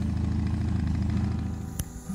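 A motorcycle engine running with a steady low rumble, easing off slightly toward the end, followed by one sharp click shortly before the end.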